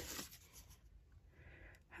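Near silence, with a faint soft rustle of paper cardstock cut-outs being handled, a little louder about a second and a half in.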